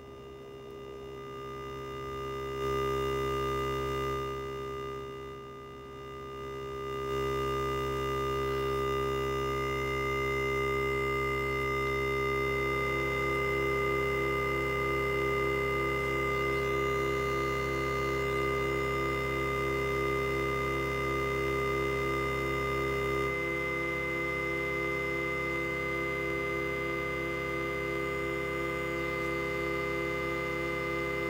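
Behringer Neutron synthesizer holding a sustained four-note chord, built from its two oscillators with the resonant filter and the LFO patched in as third and fourth tone sources. The tones are faded in and balanced in stages, with a brief dip early on. From about twelve seconds in, one of the middle notes pulses in a steady fast beat.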